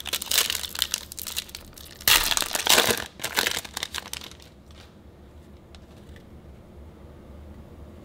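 Foil wrapper of a hockey trading card pack crinkling as it is torn open and the cards are pulled out, loudest about two to three and a half seconds in. After that it goes quieter, with only a few faint ticks.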